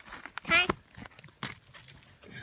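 Ears of corn and their dry husks being handled in a pile, crinkling and rustling with a few sharp clicks. A short voiced cry about half a second in.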